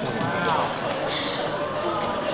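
A woman speaking over a hall's public-address microphone, with a couple of light knocks.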